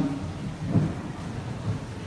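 Low rumbling background noise in a pause between spoken phrases, with a soft low thump a little under a second in.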